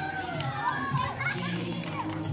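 An audience of young children calling out and cheering over a Kannada song that accompanies a dance.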